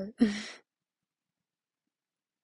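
A young woman's voice: the end of a spoken word, then a short breathy voiced exhalation, cut off about half a second in.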